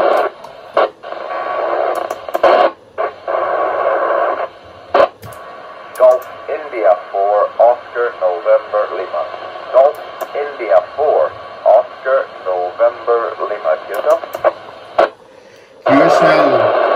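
FM radio receiving the ISS cross-band repeater downlink. For about four seconds there is steady static hiss broken by short dropouts and clicks. Then another station's voice comes through thin and noisy for most of the rest.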